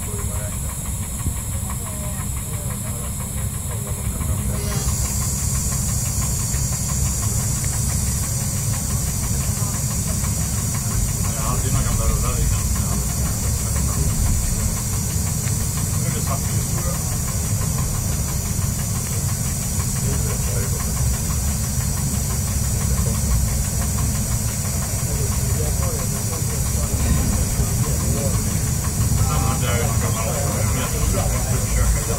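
Y1 diesel railcar under way, heard from inside at the front: a steady low rumble of engine and wheels on the track under a constant hiss. About four and a half seconds in the hiss grows louder and stays up.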